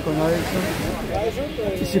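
Men talking, with a brief rush of noise about half a second in.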